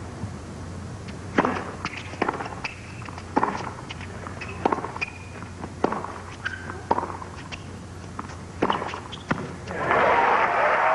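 Tennis ball struck by racquets in a rally: a serve about a second and a half in, then sharp hits roughly every second, alternating between the two players. A few short shoe squeaks on the hard court fall between the hits, over faint crowd murmur.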